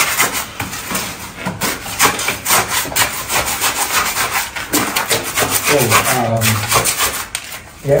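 Wood scraping and rubbing in quick, repeated strokes, dense for about the first five seconds and thinning out after.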